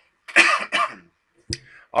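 A man coughing, a loud, rough burst in two quick parts, followed by a single sharp click.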